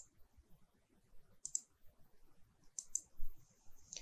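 Faint computer mouse clicks, a few single and paired clicks spaced out across the few seconds, as the software is worked by mouse.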